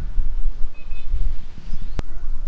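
Wind buffeting the camera's microphone: a loud, uneven low rumble, with a couple of faint high chirps about a second in.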